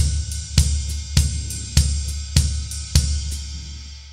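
Drum kit playing a swung shuffle groove, a ride cymbal pattern over bass drum, with strong strokes about every 0.6 seconds and lighter hits between. The playing stops a little before the end and the cymbal rings out.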